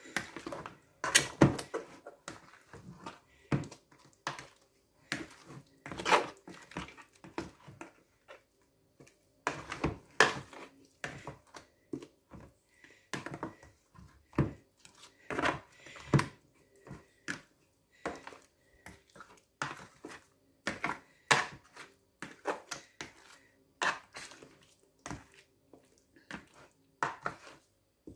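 A plastic spoon scraping and knocking against a plastic mixing bowl as pieces of catfish are turned in a thick, wet seasoning paste. The result is irregular wet squelches, taps and scrapes.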